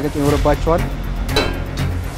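Speech over background music, with one sharp hit a little past halfway.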